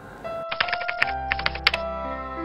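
Keyboard-typing sound effect: a rapid run of clicks lasting a little over a second, as on-screen text is typed in, over soft background music.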